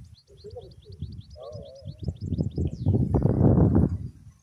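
A small songbird singing a fast, even run of short high chirps, about five a second, which stops near the three-second mark. Close rustling and handling noise rises over it and is loudest in the last second.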